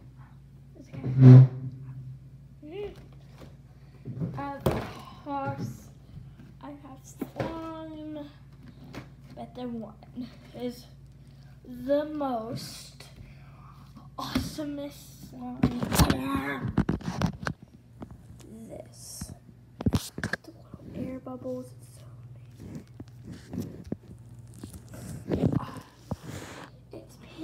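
A girl's voice shouting and making wordless sounds in a small room, with a few knocks from handling things near the microphone.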